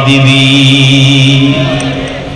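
A man's voice holding one long chanted note through a microphone, in the sung style of a Bangla waz sermon, trailing off about one and a half seconds in.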